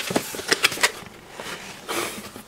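A small cardboard box being opened by hand: a quick run of scraping, tapping noises from the flaps in the first second, then another near the end.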